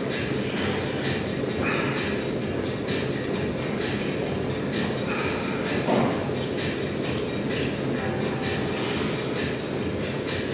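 Steady rumbling room noise with faint, irregular clicks and a brief swell about six seconds in, as a camera microphone picks it up in a gym during a dumbbell set.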